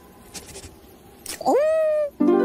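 A cartoon lizard's vocal cry of surprise, starting about a second and a half in: a short, loud call that sweeps sharply up in pitch and then holds. It follows a quiet stretch with a few faint ticks.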